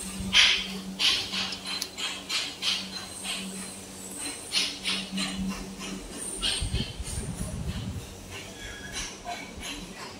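Factory machine room sound: a steady low hum with irregular short clicks and clatter through the first part, and a brief low rumble about seven seconds in.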